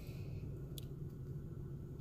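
Quiet room tone with a low steady hum and one short, faint click about a second in.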